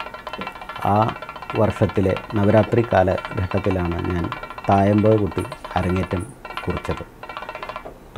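A man talking over soft background music with steady held tones.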